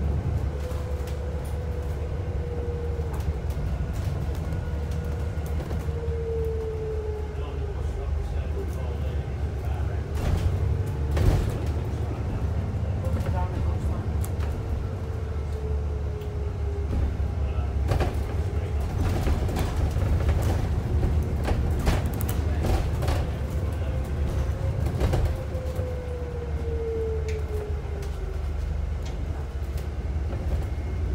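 ADL Enviro 400 MMC bus heard from inside the saloon while under way: a steady low engine drone, with a whine that slides down in pitch several times as the bus pulls away and changes gear. Now and then the body gives a sharp knock or rattle.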